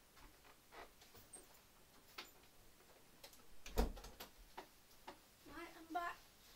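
A few scattered, irregular clicks and taps, with one louder knock about four seconds in. A person's voice starts near the end.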